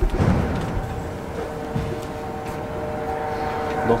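Old TITAN traction freight elevator car travelling in its shaft: a steady mechanical rumble with a constant hum of several tones. A clunk comes right at the start.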